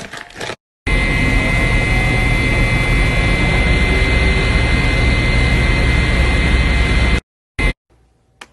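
Factory machinery running loudly and steadily with a high steady whine, then cutting off suddenly near the end, followed by one short burst. A few quick taps come in the first half-second, before a brief gap.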